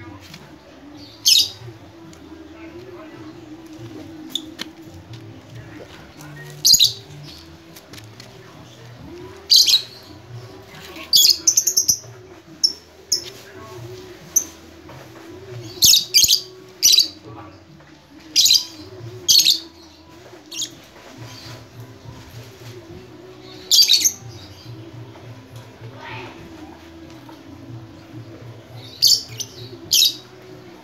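Caged lovebirds giving short, shrill calls: about fifteen sharp cries scattered irregularly, some in quick pairs or triplets, over a faint steady low hum.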